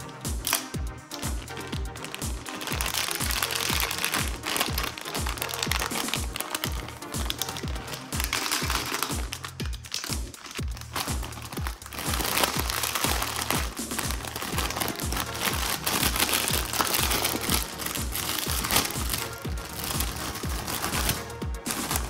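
Plastic Cheetos snack bag crinkling as hands squeeze and handle it, starting about two seconds in, over electronic dance music with a steady beat.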